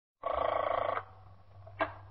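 A telephone bell rings once for about three-quarters of a second, then a short click near the end as the receiver is picked up. A low steady hum runs underneath.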